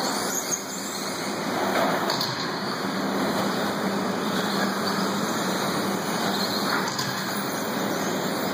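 Electric 1/10-scale 2WD RC buggies running on an indoor dirt track: a steady rushing noise of motors and tyres.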